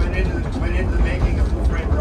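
Cabin of the 1925 Pacific Electric electric trolley car No. 717 rolling along the track: a steady low rumble, with a man talking over it.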